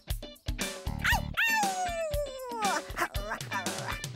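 Children's TV show music with drum hits. About a second in come two quick rising pitch sweeps, then a long falling slide lasting over a second.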